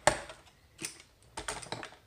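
Plastic paper trimmers being handled and shifted on a table. A sharp plastic clack comes at the start, another a little before a second in, and a quick run of lighter clicks and knocks near the end.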